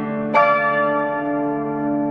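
Background piano music: a chord struck about a third of a second in and left to ring, fading slowly.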